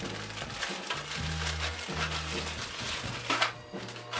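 Thin plastic bag crinkling and crackling as it is handled and torn open, over background music with low held bass notes.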